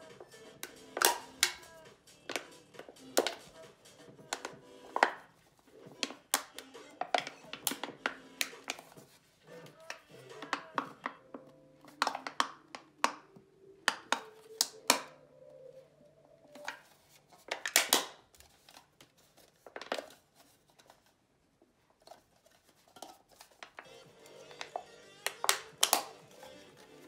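Thin aluminium soda can being dented and bent by hand, giving sharp, irregular crinkling snaps of the metal, over background music.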